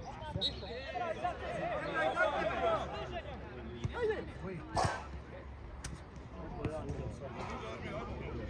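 Players' calls and shouts on a football pitch, loudest in the first few seconds, with a few sharp knocks of the ball being kicked, the strongest about five seconds in.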